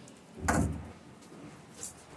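A single dull thump about half a second in, then a faint short click near the end.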